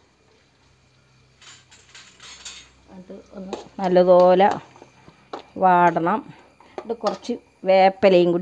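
A steel ladle clicking and scraping against an aluminium pot as chopped shallots and green chillies are stirred in hot oil, in the first few seconds. A person's voice then speaks in three short bursts, louder than the stirring.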